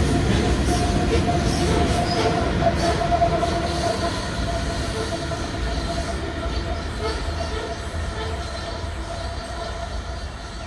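A coal train's hopper wagons rumbling past on the rails, with a steady wheel squeal over the rumble through the first half or more. The train grows fainter towards the end as it moves away.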